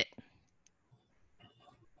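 A few faint, short clicks in a quiet pause, with the tail of a voice right at the start.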